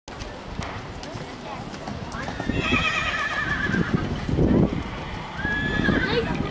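A horse whinnies, a quavering high call starting about two and a half seconds in and lasting a second and a half, with a shorter high call near the end. Underneath are dull hoofbeats of a horse cantering on the sand arena.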